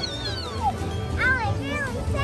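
Background music with a young child's high voice over it: a falling squeal, then three short rising-and-falling squeals in quick succession.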